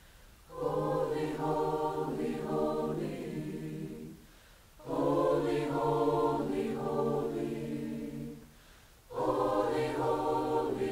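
High school mixed choir singing held chords in three phrases, each about three to four seconds long, with a brief pause for breath between them.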